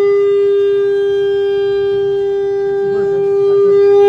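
Conch shell (shankha) blown in one long, steady held note, growing slightly louder near the end, as is done during a Hindu puja.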